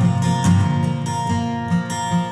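Acoustic guitar strummed steadily under a slow song, the chords ringing on between strokes.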